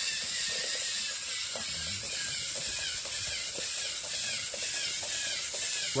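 Lego EV3 Theo Jansen-style eight-legged walker running: the steady whir and clatter of its motors, plastic gears and leg linkages, with its feet tapping the wooden floor in a rhythm that kind of sounds like a horse when it gallops.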